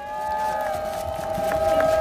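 A few high voices in the audience doing a vocal drum roll, holding steady pitched "rrrr" tones that slowly grow louder.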